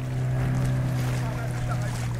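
Outboard motor of a small boat running at a steady pitch, with water rushing and splashing around the hull.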